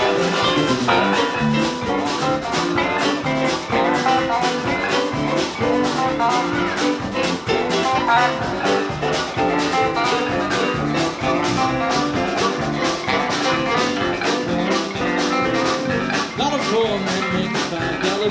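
Live band playing an instrumental break with a steady drum beat: harmonica played into a vocal mic over electric guitars, electric bass and drum kit.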